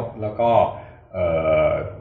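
Speech only: a man talking in Thai, who holds one long, steady hesitation sound about a second in.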